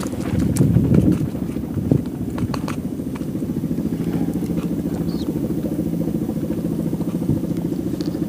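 A small engine running steadily, with a few light clicks in the first few seconds.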